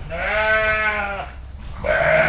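Sheep bleating: one long call, then another starting near the end.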